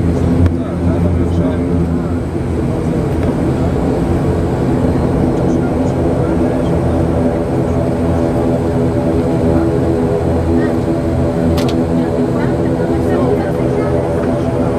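Turboprop airliner's engines and propellers heard from inside the cabin during the takeoff roll: a loud, steady drone made of a stack of even tones over a low rumble.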